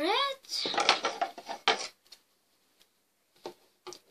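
Handling noise and a light metallic clatter as a pair of scissors is picked up off a wooden floor and yarn is pulled. A brief rising vocal sound comes first. The sound dies away after about two seconds, leaving a couple of soft clicks near the end.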